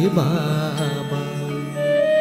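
Telugu devotional hymn: a singer holds and ornaments the last syllable of a line with a wavering pitch over a steady drone, and an instrumental melody begins near the end.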